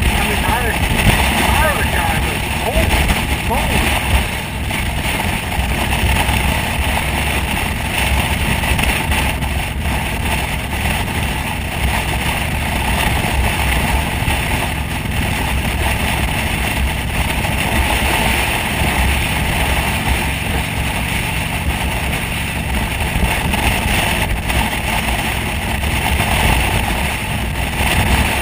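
Steady wind rush and buffeting on the microphone of a motorcycle at highway speed, with the motorcycle's engine and tyre noise underneath.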